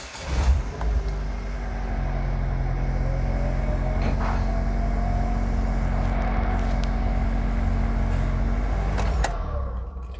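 A Pontiac Solstice's engine starts up about half a second in and idles steadily, with a faint rising whine partway through. It shuts off a little after nine seconds.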